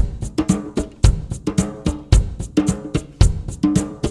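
Instrumental backing-track intro for a chant: a drum-kit beat with a bass drum about once a second and lighter snare and cymbal hits in between, over a pitched accompaniment.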